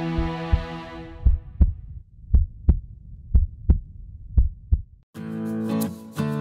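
Heartbeat sound effect in an intro sting: four double 'lub-dub' thumps about a second apart, after a sustained music chord fades out. Guitar music starts just before the end.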